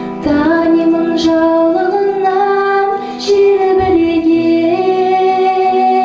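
A female vocalist singing a song into a handheld microphone over instrumental backing music, holding long notes that step smoothly from pitch to pitch.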